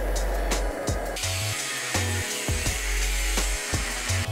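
Background music with a steady beat over an angle grinder's cut-off wheel cutting through 4 mm steel plate. The grinding comes in about a second in as a dense high hiss and runs on under the music.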